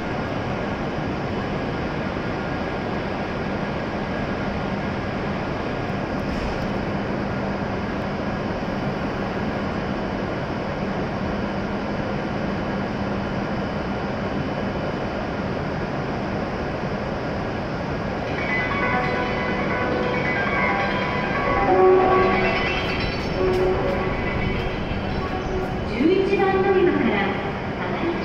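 Steady hum and hiss of an E7 series Shinkansen standing at the platform with its doors open, with a low steady tone underneath. About two-thirds of the way in, a station public-address announcement with musical tones starts over it, ahead of departure.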